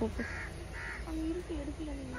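Crows cawing: two caws about half a second apart in the first second, part of a run of calls.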